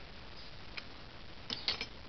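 Small metal clicks of a bolt and nut being handled and fitted through a rubber stopper: one faint click, then a quick run of sharper clicks near the end.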